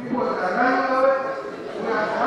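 A man speaking into a handheld microphone, his voice held on long vowel sounds.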